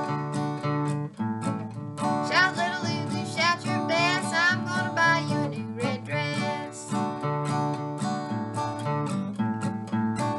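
Acoustic guitar strummed in a steady rhythm, with a woman singing an old-time song over it from about two seconds in until about seven seconds in, then the guitar alone.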